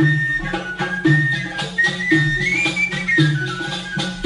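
Instrumental passage of a 1960s Arabic song played by an ensemble. A high held melody line rises to a peak in the middle and falls again, over a steady low rhythm of about two strokes a second.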